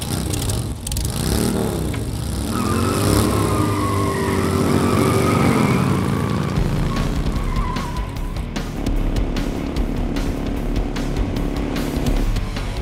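Motorcycle engine revving up and back down, then held at high revs while the spinning rear tyre squeals in a burnout for several seconds.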